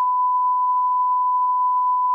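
Censor bleep: a single steady, high pure tone laid over speech to blank out the words.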